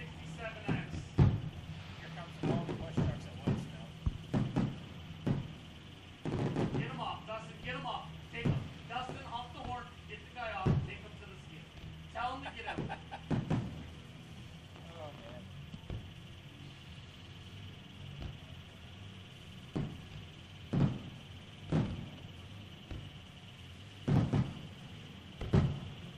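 Aerial firework shells bursting: about a dozen sharp booms at irregular intervals, some in quick pairs, with fewer in the middle of the stretch, over background voices.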